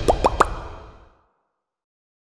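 Logo-animation sound effect: three quick rising bloops in a row, each pitched higher than the one before, over the last of the music fading out within about a second.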